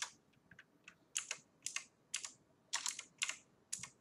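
Computer keyboard being typed on: a dozen or so short, sharp keystrokes at an uneven pace.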